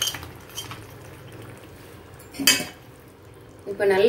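Metal ladle stirring payasam in an iron kadai, clinking and scraping against the pan, with sharp clicks as cashews are tipped in from a bowl at the start. There is one louder clatter about two and a half seconds in.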